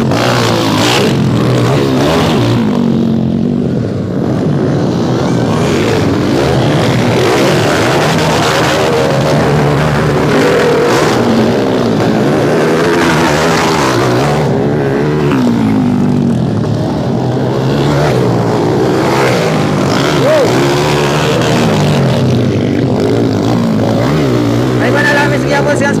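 Dirt bike engines revving up and down continuously as several motocross bikes ride along a dirt track, their pitch rising and falling through the gears.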